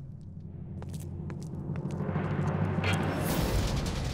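Dramatic background music: a low sustained drone that slowly builds in loudness, with a few sharp taps in the first half and a rushing swell about three seconds in.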